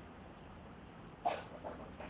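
Marker on a whiteboard, two short squeaky strokes a little past the middle, over faint room tone.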